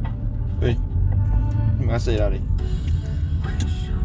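Steady low rumble of a car heard from inside the cabin, under background music. A person calls out "喂" about half a second in, and another short call that bends in pitch comes about two seconds in, the loudest sound here.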